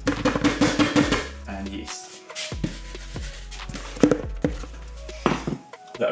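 Flour being tipped from a plastic tub into a stainless steel stand-mixer bowl: a dry, gritty rush with rapid clicks at the start, then a few sharp knocks of plastic on steel, the loudest about four seconds in.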